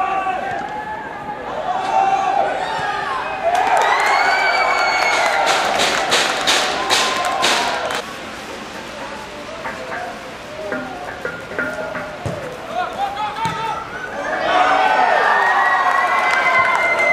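Football crowd and players shouting and cheering, with a run of sharp repeated beats around the middle. The shouting surges again near the end as a goal is celebrated.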